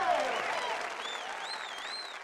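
Audience applauding and cheering, with high whistles gliding up and down over the clapping, growing gradually fainter.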